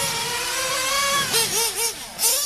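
Small high-revving nitro engine of a radio-controlled truggy running at a steady high pitch that creeps up about a second in. It then gives three quick throttle blips up and down near the end.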